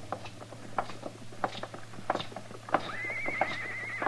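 Radio-drama sound effects of horses walking: an uneven clip-clop of hooves, with a horse giving a wavering whinny about three seconds in.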